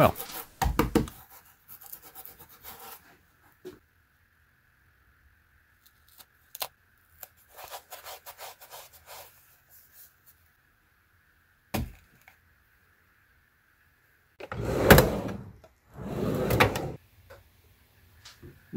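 Hands fitting hook-and-loop strips to a telescope's base panel and pressing the hand controller onto them: a thump about a second in, scattered light taps and rustles, a sharp knock midway, and two longer rasping noises of about a second each near the end.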